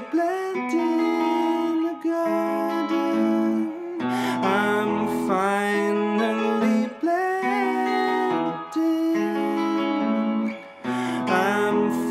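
Electric guitar playing an instrumental break of a song: ringing chords under a higher melody, with a short drop in loudness near the end.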